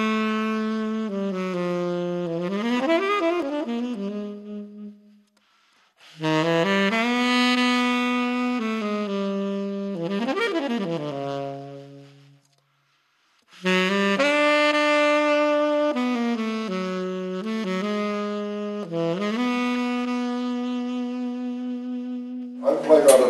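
Solo saxophone playing three unaccompanied phrases of long held notes, each ending in a quick run of sliding notes, with short pauses between phrases.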